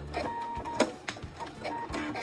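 Computerized sewing machine working briefly with a few sharp mechanical clicks and a short steady tone, as the stitching of the chenille edge is finished.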